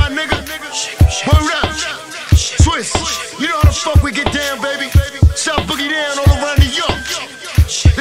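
Boom-bap hip hop remix track: heavy kick drums and a steady bassline under rapped vocals.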